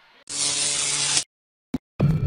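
A burst of buzzing, static-like electronic noise with a low hum in it, about a second long, which cuts off suddenly into dead silence broken by one short blip near the end.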